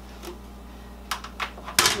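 A few light plastic clicks and one sharper knock near the end, from hands handling the lid and top tray of a plastic food dehydrator holding dried broccoli.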